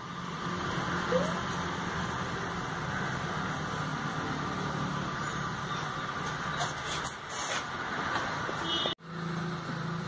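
A steady low hum over even background noise, with a few faint clicks about seven seconds in. It drops out sharply near the end and then resumes.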